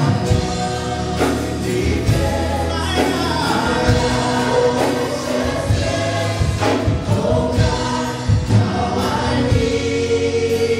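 Live worship band and group of singers performing a gospel song together, with acoustic and electric guitars and keyboard under the voices.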